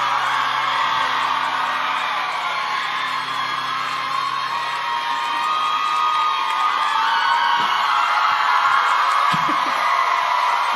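Loud audience cheering and screaming at the end of a song, with a held low note from the band dying away about six seconds in.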